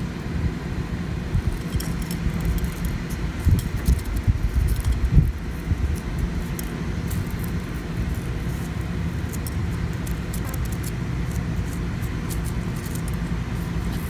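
Dried lettuce seed heads crackling faintly as they are rubbed and crumbled between fingers, over a steady low background rumble with a few soft thumps near the middle.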